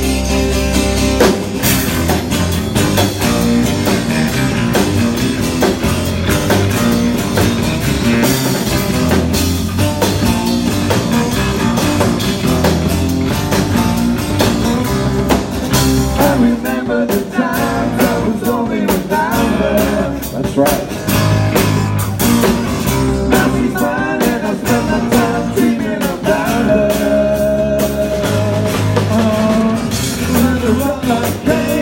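Rock band playing live, unplugged: strummed acoustic guitars over bass guitar and drums, with a man's lead vocal coming in about halfway through.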